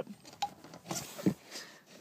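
Faint handling noises of hands working a plastic electrical connector onto the top of a fuel sender unit: a few light clicks and rubs.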